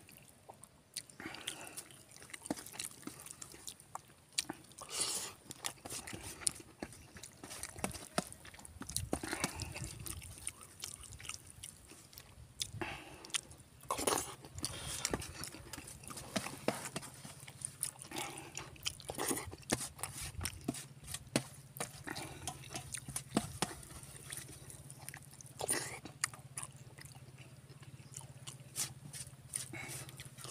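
Close-up chewing and wet mouth sounds of a man eating rice and spicy pork curry by hand, with irregular short clicks and a few louder ones scattered throughout.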